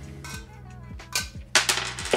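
Light metal clicks as a knockout is twisted out of a steel electrical box with pliers. About a second and a half in comes a louder metallic clatter, fitting the round steel knockout slug dropping onto the stone countertop.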